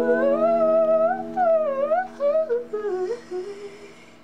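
Male singer's wordless vocal run winding up and down in pitch over a held, ringing acoustic guitar chord; both fade away over the last second.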